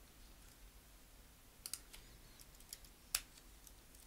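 Faint, sparse computer keyboard keystrokes: a few clicks about a second and a half in, and a sharper single one a little past three seconds.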